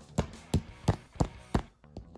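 Five sharp plastic knocks, about three a second, from a small breakable toy pallet accessory being struck with a figure in tries to snap it in half; it does not break.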